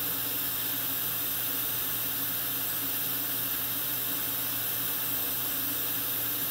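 Steady hiss with a faint low hum from running dental equipment, such as the high-speed suction, while a diode laser cuts soft tissue.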